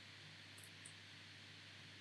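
Near silence: a faint steady hiss, with two faint computer-mouse clicks about half a second in.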